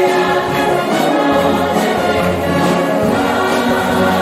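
A massed brass band and a choir performing a festival song together, the choir singing over the band's accompaniment. A low bass note comes in about a second and a half in.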